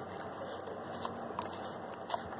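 Quiet room noise with a few faint clicks from handling an opened LED bulb as it is switched on.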